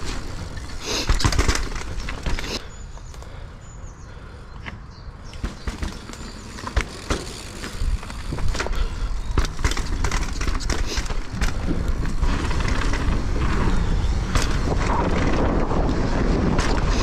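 Mountain bike riding down a dirt trail: steady tyre and rolling rumble with sharp knocks and rattles of the bike over bumps and drops. It eases for a couple of seconds about three seconds in, then grows louder and busier from about eight seconds on.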